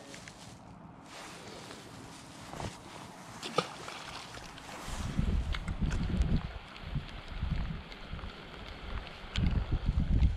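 Wind buffeting the microphone in irregular low rumbling gusts from about halfway through, after a quieter stretch of outdoor hiss with a couple of sharp handling clicks.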